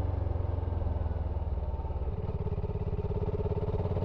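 BSA Gold Star 650's single-cylinder engine running steadily while the bike is ridden along, its exhaust a fast, even beat.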